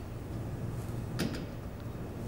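Steady low room hum with a short double click a little over a second in, a footstep from a person walking slowly on a carpeted floor.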